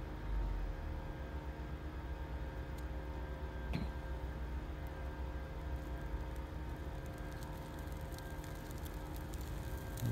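Brush fire burning in a pit, crackling with sparse ticks that come more often in the second half as the flames build. Under it runs a steady low engine hum.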